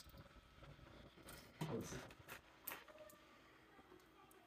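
Faint, quiet scratching of a fork over wax honeycomb cappings to uncap the frame for extracting, with a few short clicks and a brief low voice about halfway through.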